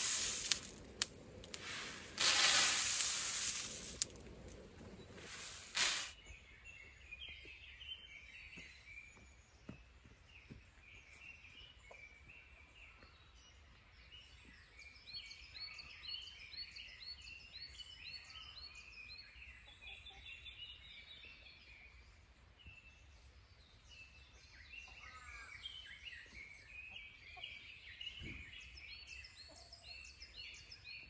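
Roasted coffee beans pour into a woven bamboo basket with a loud rattling rush, twice in the first few seconds and once more briefly. Then come birds singing and calling, with many quick repeated chirps.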